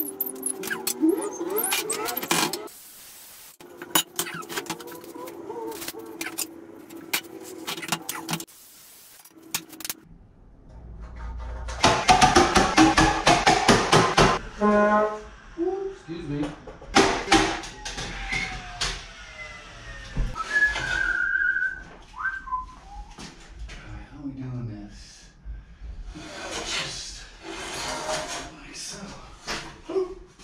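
Background music over wall-framing work: scattered knocks and clicks, with a loud, dense stretch of noise a little before halfway through.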